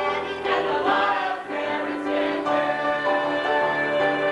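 Music: a group of voices singing together with instrumental accompaniment, the notes held steadier in the second half.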